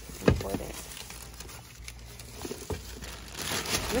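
Plastic shopping bags and a foil snack bag rustling and crinkling as they are handled and lifted out of a car trunk, with a sharp thump shortly after the start and a few light knocks.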